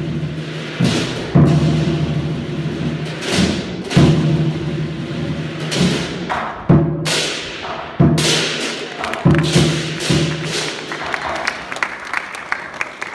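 Lion dance accompaniment: a large Chinese lion drum struck in heavy, irregular beats that ring on, with cymbal crashes over them. Near the end the drumming stops and applause begins.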